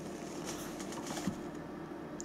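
Quiet room tone with a steady low hum, a few faint rustles and one small click about a second in.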